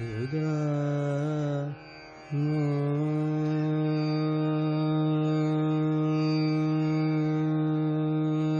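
Male Hindustani classical vocalist singing slow alap in raga Bhimpalasi: a short phrase with gliding, ornamented pitch, a brief break about two seconds in, then one long steady held note. A tanpura drone sounds underneath.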